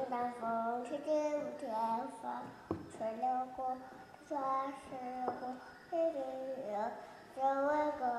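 A voice singing a simple song unaccompanied, in short phrases of held notes with brief pauses between them. Two faint taps come in about two and a half and five seconds in.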